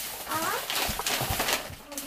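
A plastic carrier bag rustling as packets of cat food are handled and taken out of it, with a couple of soft thumps. A short high call comes about half a second in.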